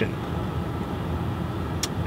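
Steady low rumble of a pickup work truck heard from inside its cab, with a short click near the end.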